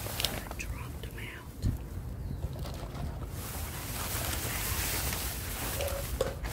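Plastic garbage bags rustling and crinkling as hands grab and rummage through them, louder from about halfway through, with soft whispering.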